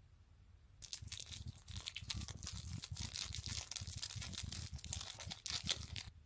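A small plastic condiment sachet from a sushi platter being crinkled and torn open by hand: dense crackling rustle starting about a second in, with a sharper tearing crackle near the end.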